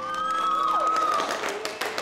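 A classroom of students clapping. Over the claps one high cheering voice rises, holds for about a second, then slides down.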